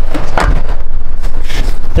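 A car door is shut about half a second in, over a steady low rumble on the microphone; another sharp knock comes just before the end.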